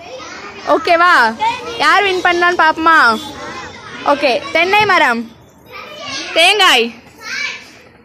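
Children's voices calling and chanting together in a group game. The high sing-song phrases come in several short bursts with brief pauses between them.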